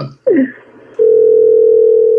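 Telephone dial tone: a steady tone that comes on about a second in and holds, the line open and ready to dial.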